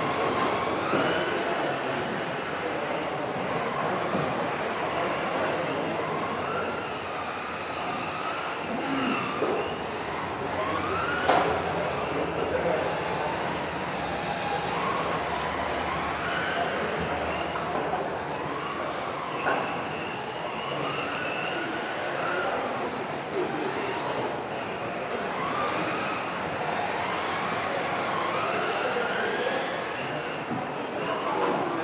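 Several electric RC racing cars lapping a track in an echoing hall. Their motors whine, rising and falling in pitch over and over as they accelerate and brake. There are a couple of sharp knocks, one a little past the middle and one about two-thirds in.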